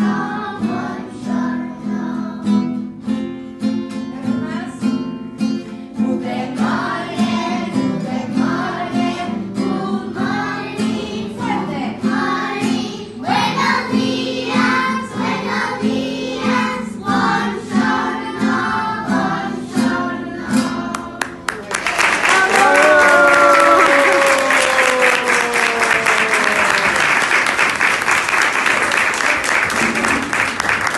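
A group of young children singing a song together to a strummed acoustic guitar. About two-thirds of the way through the song ends and the audience breaks into applause, with one voice calling out in a long falling cheer over the clapping.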